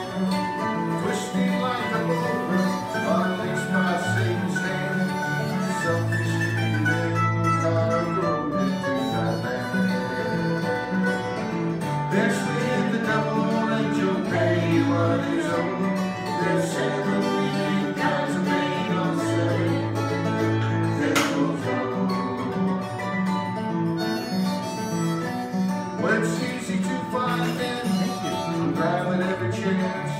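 Live acoustic folk band playing an instrumental break without vocals: guitar over a bass line that moves between held low notes.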